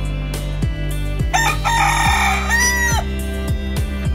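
A Thai bantam rooster crows once, from about a second in, for roughly a second and a half: a rasping opening that ends in a held, arched note. Background music with a steady beat plays throughout.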